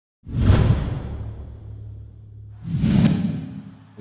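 Two whoosh sound effects of an animated logo intro: the first starts about a quarter second in, the second just before three seconds, each swelling fast and then fading, with a low steady hum between them.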